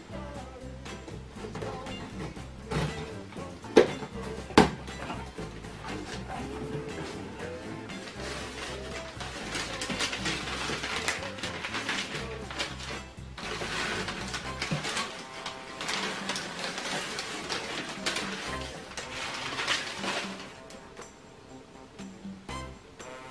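Background music, with two sharp clicks about four seconds in. In the second half, the rustle and crackle of crumpled newspaper packing being lifted out of a cardboard box.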